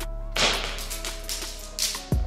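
Plastic juggling rings slapping and clattering onto a hard floor as a six-ring run collapses, in two noisy bursts: one about half a second in and a shorter one near the end. Background music plays underneath.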